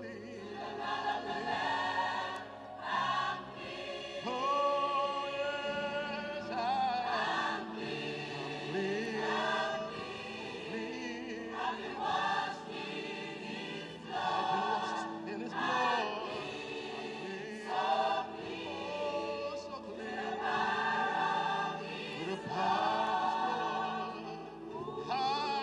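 Choir singing a gospel hymn in phrases a few seconds long.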